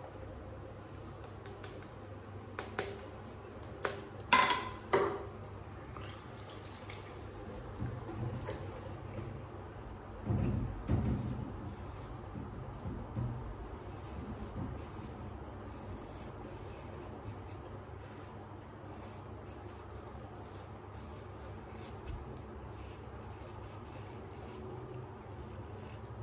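Pearl semi-slant safety razor drawn in short, quiet strokes across lathered stubble, each a faint scrape, about one or two a second through the second half. In the first five seconds there are a few sharp splashes or knocks, and a dull thump about ten seconds in.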